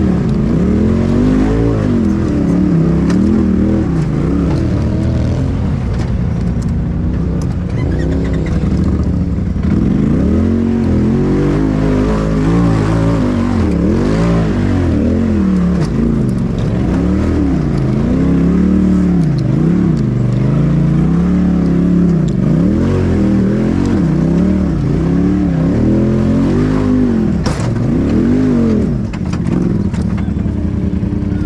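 Side-by-side UTV engine revving up and falling back again and again in short throttle bursts, every second or two, while crawling over rocks under load.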